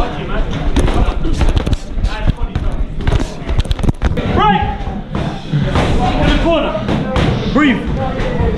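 Boxing sparring exchange heard from a head-mounted camera: a dense run of thuds and slaps from gloves and footwork in the first half, with music and voices in the gym over it.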